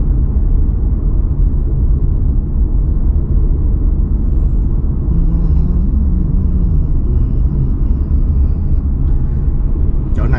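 Steady low rumble of road and engine noise inside a car's cabin while driving in slow freeway traffic, with a low tone that briefly rises and falls a little past halfway.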